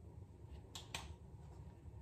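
Two short sharp plastic clicks close together about a second in, as a clear plastic retainer is pulled off the teeth by hand, over a faint low room hum.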